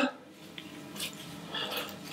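Faint handling sounds of copper bonsai wire being wrapped along a cypress branch, with a small click about a second in and soft rubbing near the end.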